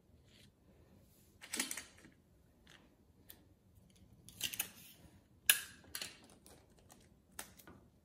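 Printed paper pattern sheets rustling and sliding as they are handled and laid out, in several short bursts.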